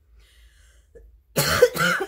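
A woman coughing twice in quick succession, starting about one and a half seconds in.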